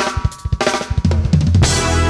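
Opening bars of a full-band pop arrangement: drum kit hits on snare, bass drum and cymbals under sustained band chords, with a bass line coming in about a second in.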